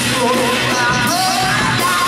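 Live blues-rock duo playing: electric guitar and a drum kit with crashing cymbals, the singer's voice sliding up and down in pitch over it.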